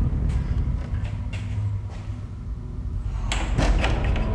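A door with glass panes being pushed shut, a quick cluster of knocks about three and a half seconds in, over a steady low rumble.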